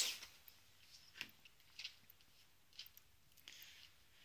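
Faint, scattered handling noises: a few light ticks about a second apart and a short soft rustle near the end, from propolis crumbs and a piece of card being handled beside a kitchen scale.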